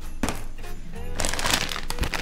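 A plastic bag of frozen vegetables crinkling as it is picked up and handled, starting a little over a second in, after a short knock near the start.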